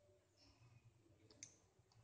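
Near silence, with faint strokes of a pen on paper and one small, sharp click about two-thirds of the way through.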